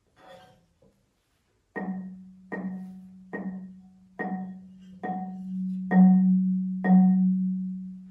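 Marimba, one low wooden bar struck seven times with soft mallets, about a stroke a second. The first four notes are short and die away quickly with the resonator tube under the bar blocked off. The last three ring louder and longer once the resonator is opened.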